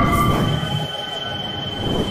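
Cinematic logo-reveal sound effect: a deep rumble under several held, high metallic ringing tones, starting abruptly and loudest in the first half second.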